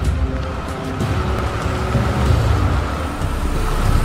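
A large SUV driving off, its engine and tyres heard as a steady rumble, mixed under a dramatic music score.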